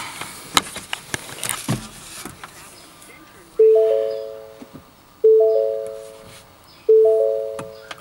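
Ford Mustang's dashboard warning chime sounding three times, about a second and a half apart, each a short multi-note chime that fades away; the car is in accessory mode with the engine not yet running. A couple of light clicks come before the first chime.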